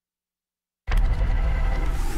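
Dead silence for almost a second, then a newscast segment-opener sound effect cuts in suddenly: a loud rushing noise with a deep rumble.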